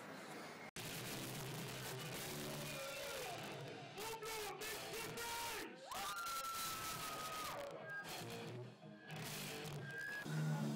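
Live death metal band playing in a small pub: a dense wash of drums and distorted guitars with screamed vocals over it and a long held high note about midway. The sound cuts in abruptly just under a second in.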